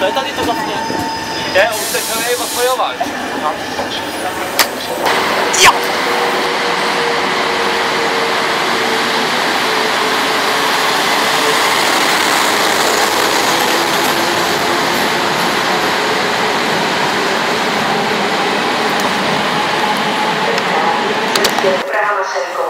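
Railway train noise at a station. A few clicks and brief voices come in the first seconds, then about six seconds in a steady, loud rush of train noise sets in, with a faint hum that slowly falls in pitch.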